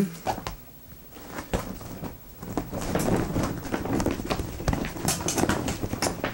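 Stiff nylon softbox fabric rustling, with scattered knocks and clicks as a bent support rod is worked into place. The rustling and clicking grow busier in the second half.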